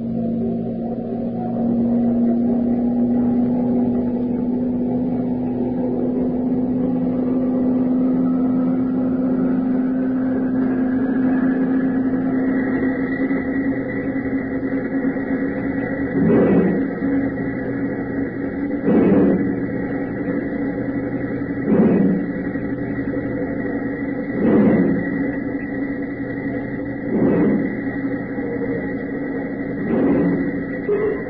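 Assembly-line machinery sound effect: a steady mechanical drone that builds up over the first dozen seconds, then, from about halfway through, heavy regular strikes roughly every two and a half to three seconds over the running drone.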